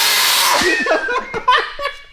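Nitrous oxide bottle valve opened wide, the gas jetting out in a loud hiss that starts suddenly and dies away over about a second. A man laughs and shouts over it.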